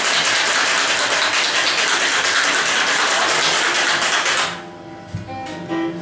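Ice cubes rattling hard inside a metal cocktail shaker as it is shaken vigorously, a fast continuous clatter that stops about four and a half seconds in.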